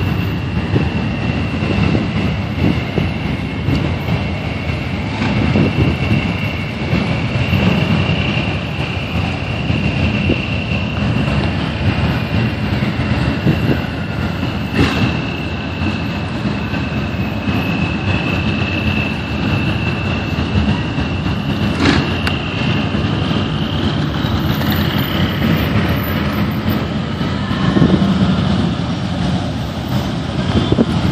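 Motorcycle and vehicle engines rumbling in a slow-moving procession, with a steady high-pitched whine above them. Two short sharp clicks stand out, about halfway through and again about two-thirds of the way in.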